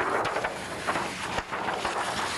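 Large sheets of printed card being handled and turned over on a table, rustling steadily with a few short knocks.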